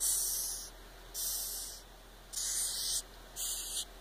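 A flat-horned hissing cockroach hissing four times, each a short, high, airy hiss under a second long with pauses between. It is the disturbance hiss of an agitated roach reacting to being picked up and handled.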